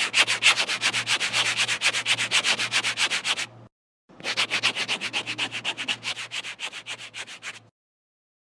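Rapid back-and-forth rubbing strokes, about eight a second, like sandpaper or a stiff brush scrubbed on a surface, over a low hum. The strokes stop briefly about halfway through, then resume and stop near the end.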